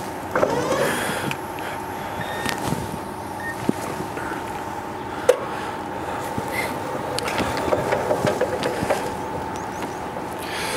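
Jungheinrich electric forklift driving slowly over cobblestone paving: a steady whine from the electric drive over the rumble and rattle of its wheels on the stones, with a sharp click about five seconds in.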